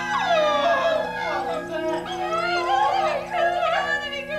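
A high wailing cry, its pitch swooping up and down in several long slides, over the steady drone of the film's music score.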